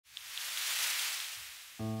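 A hiss that swells and then fades away, followed near the end by background music starting with sustained keyboard chords.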